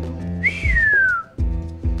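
A single whistle that slides briefly up and then falls steadily in pitch, lasting under a second, over steady background music.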